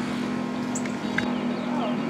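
A steady low hum, with a few faint short high chirps over it.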